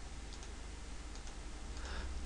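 A few faint computer mouse button clicks, spaced irregularly, over a steady low hum.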